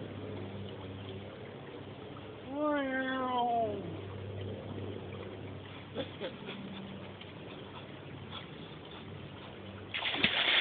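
A person's single drawn-out yell, about a second and a half long, rising a little and then falling in pitch, about two and a half seconds in, over a faint steady hum.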